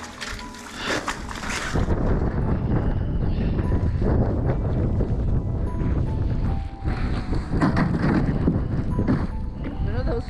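Wind buffeting an action-camera microphone on open ice during a snowstorm, a heavy low rumble that comes up about two seconds in and stays loud, with background music underneath.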